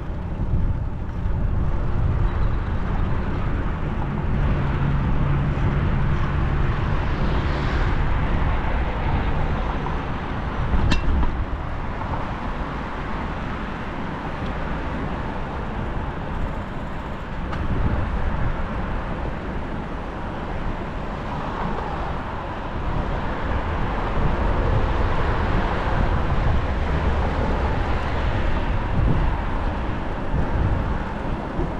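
Steady road-traffic noise from cars on the adjacent multi-lane street, with rumbling wind noise on a GoPro action camera's microphone while cycling. There is a brief sharp click about eleven seconds in.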